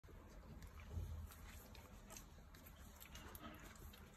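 Very quiet puppy sounds, with a soft low thump about a second in.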